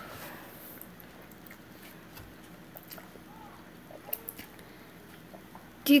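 Quiet sounds of noodles being eaten and chewed, with a few light clicks scattered through, the sharpest about four seconds in.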